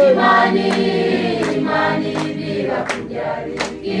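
Mixed church choir of men and women singing a Swahili gospel song unaccompanied, clapping hands on the beat about once every three-quarters of a second.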